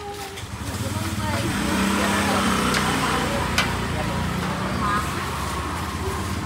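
A motor vehicle's engine running steadily, swelling about a second in and easing off near the end, with a couple of light clicks over it.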